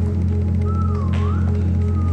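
Organ holding a steady low chord in a church. About a second in, a thin higher tone dips and rises over it.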